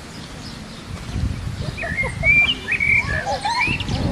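Songbirds chirping and whistling, a run of varied short calls starting about a second and a half in, over a low rumble of wind that swells about a second in.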